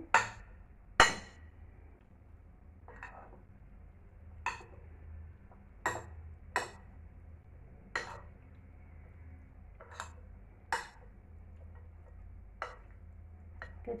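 Metal spoons clinking against a white salad bowl as a creamy pasta salad is tossed: about a dozen sharp, uneven clinks a second or so apart, the loudest about a second in.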